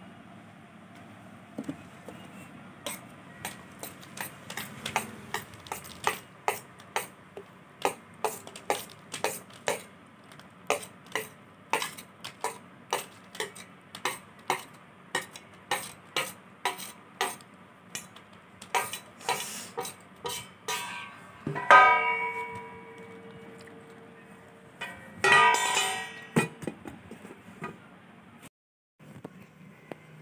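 A knife tapping and scraping on a steel plate in a steady run of sharp ticks, about two a second, as cut pieces of dough are lifted off. About three-quarters of the way through comes a loud metallic clang with a ringing tone, and near the end another ringing clatter of steel.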